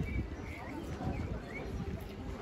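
Outdoor ambience: small birds chirping in short rising notes, over faint background voices of people nearby.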